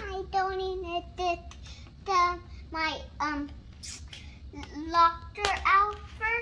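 A young boy singing to himself in short, high-pitched phrases, some notes held on one pitch.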